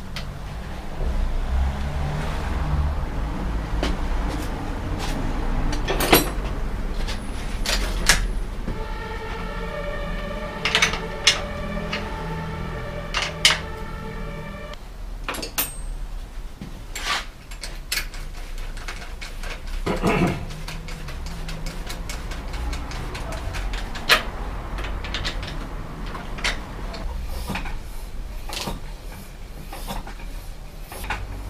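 Workshop handling noises: scattered clicks and knocks of tools and parts as a bicycle's rear wheel is worked on, over a steady low hum. A steady ringing tone sounds for about six seconds in the middle.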